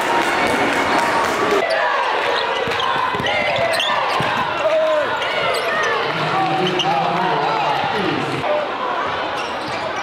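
Live basketball game sound in a gym: the ball dribbling on the hardwood, shoes squeaking, and players and spectators calling out.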